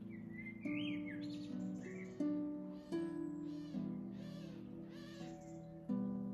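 An 1896 Gothic spiral harp playing a slow melody: plucked notes and chords that ring on, a new note struck every second or so. A bird calls over it, with rising and falling whistles in the first two seconds, then a run of about five repeated calls.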